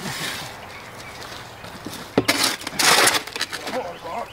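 A shovel digging in hard clay and rock: a sharp strike about two seconds in, then two rough scraping scoops of dirt and stone.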